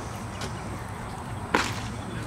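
A single sharp pop about one and a half seconds in: a pitched baseball smacking into the catcher's leather mitt, over steady outdoor background noise.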